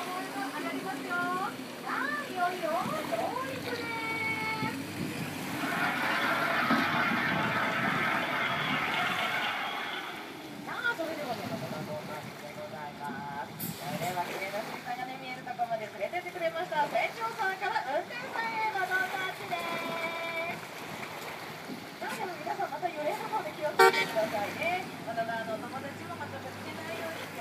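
People's voices chattering and exclaiming as the KABA amphibious bus climbs out of the lake onto land, with a rush of water for a few seconds about six seconds in. A few short horn toots sound.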